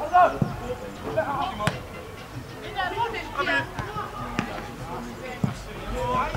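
A football being kicked again and again during passing play, a sharp thud each time, the loudest right at the start, with players shouting to each other in between.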